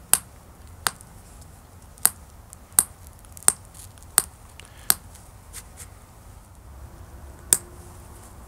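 Pressure flaking thin, brittle ancient Roman glass with a copper pressure flaker: about eight sharp clicks as tiny flakes snap off the edge, most well under a second apart, with a longer pause near the end.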